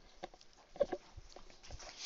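Faint room tone with a few soft clicks near the start and a short faint sound a little under a second in.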